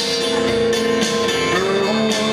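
Live band playing a song, led by a strummed acoustic guitar with held notes over it, strum strokes falling about once a second. Heard from within the audience.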